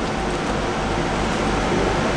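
Steady background noise of an airport terminal: an even hum like ventilation, with no distinct events standing out.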